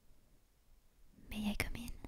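A woman whispering close to the microphone, a short utterance starting about a second and a quarter in, after a quiet stretch.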